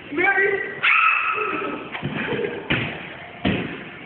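High-pitched voices calling out without clear words, then two sharp thuds in the second half.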